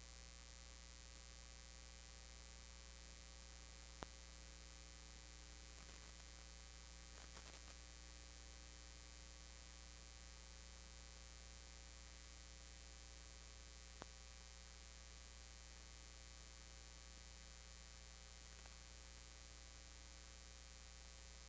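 Near silence with a steady electrical hum, broken by two faint clicks about ten seconds apart.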